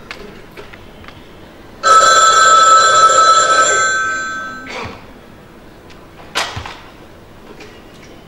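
A telephone bell rings once, loudly, starting about two seconds in and fading away over about two seconds. A single sharp knock comes a little later.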